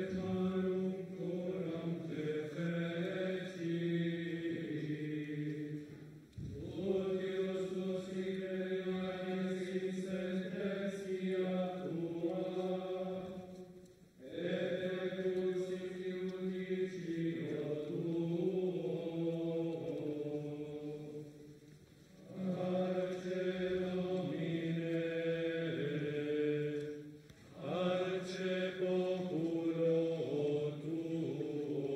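Male voices of a procession of Franciscan friars chanting together in unison. The chant runs in phrases of several seconds, with short breaks for breath about every six to eight seconds.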